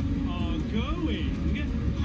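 Mostly speech: a man and children talking and exclaiming, their voices rising and falling in pitch, over a steady low background sound.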